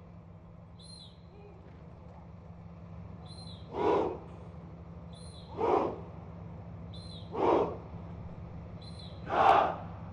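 A formation of cadets shouting in unison four times, a sharp shout about every second and a half to two seconds as they strike drill moves, the last the loudest. Each shout comes just after a short high peep that cues it.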